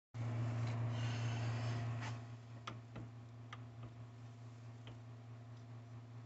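Hand-cranked jewellery rolling mill being worked: a few faint, isolated clicks over a steady low hum, with a soft hiss in the first two seconds.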